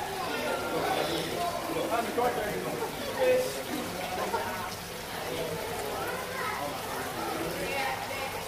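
Background chatter of several people's voices, children among them, with no single sound standing out.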